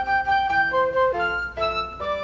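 A woodwind flute playing a short tune of about half a dozen held notes that step up and down in pitch.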